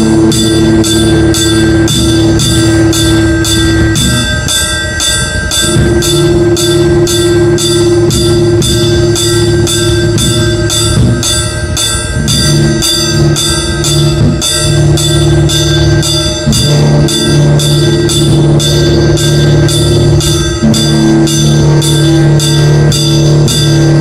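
Instrumental experimental metal: distorted electric guitar holding long sustained chords over drums, with a steady beat of metallic percussion hits about two a second.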